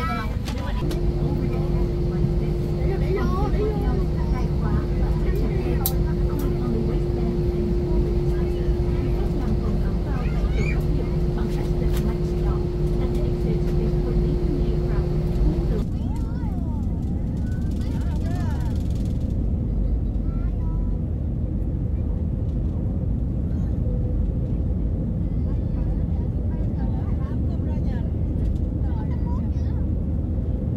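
Airliner cabin noise: a steady low rumble with a constant hum tone over it. About halfway through the hum cuts off and the steady engine rumble carries on as the plane takes off and climbs.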